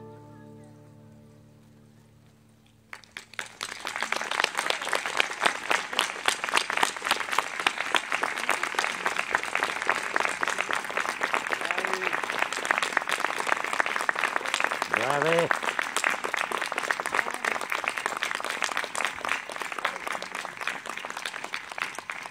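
The last chord of two concert harps dies away, then an audience claps steadily from about three seconds in. A brief rising call rises out of the clapping about two-thirds of the way through.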